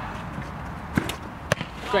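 Two sharp thuds of a football about half a second apart: a shot being struck, then the ball slapping into the goalkeeper's gloves as he saves it.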